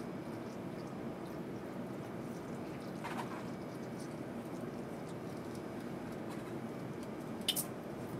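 Wash solution faintly squirted from a plastic squeeze bottle into plastic test wells, over a steady room hum. A single sharp tap near the end as the bottle is set down on the bench.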